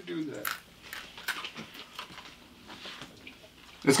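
Faint, sparse crunches of small communion wafers being bitten and chewed.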